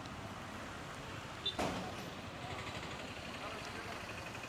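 Road traffic passing on a town street, with a single sharp knock about one and a half seconds in.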